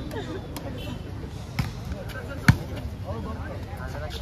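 A volleyball being struck: a few sharp slaps of hand and forearm on the ball as a rally gets under way, the loudest about two and a half seconds in, over a crowd's steady chatter.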